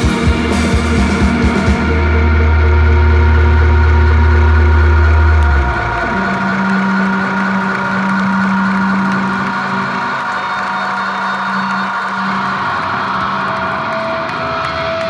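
Rock band playing live at the end of a song: rhythmic hits for the first couple of seconds, then a loud held low bass chord that cuts off about five and a half seconds in, leaving a steady droning chord of guitar and keyboard ringing on.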